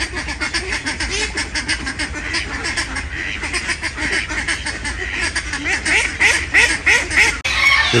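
A flock of domestic ducks quacking in a dense, continuous chorus while they feed, many short quacks overlapping every second. The chorus breaks off abruptly near the end.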